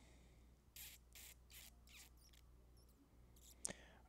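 Near silence: room tone with a few faint, short rustles in the first half and a single sharp click near the end.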